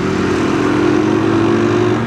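Small commuter motorcycle's engine running steadily while riding, its pitch easing down slightly, over a rush of wind and road noise.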